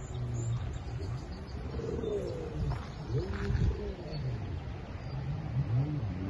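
Outdoor wind buffeting the microphone as a steady low rumble that rises and falls in gusts, with a few short, low rising-and-falling tones over it.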